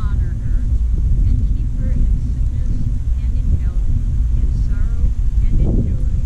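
Wind buffeting an action camera's microphone: a steady, fluctuating low rumble that covers the scene, with faint distant voices under it.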